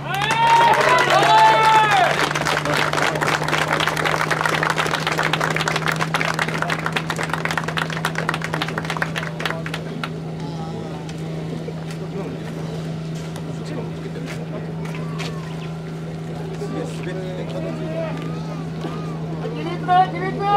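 Fire pump engine running steadily at high revs while the hose discharges a water jet, with a hissing spray noise strongest in the first half. Loud shouted drill calls come in the first two seconds and again at the end, with fainter voices in between.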